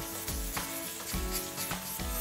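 Background music with a steady beat, over the faint scratchy rubbing of wet 320-grit sandpaper worked in small circles across a cured epoxy resin surface.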